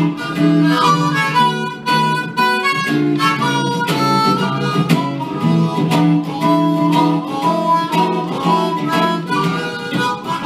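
Blues harmonica played live over electric guitar accompaniment: the harp holds long chords and runs melody notes while the guitar picks and strums a rhythm.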